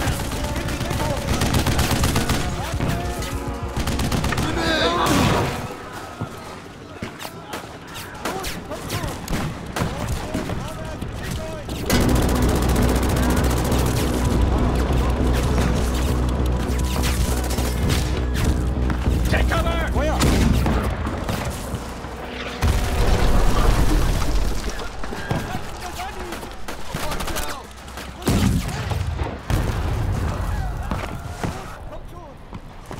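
Film battle sound effects: rapid rifle and machine-gun fire with booms of explosions, over a music score and shouting. A steady low rumble runs for several seconds in the middle.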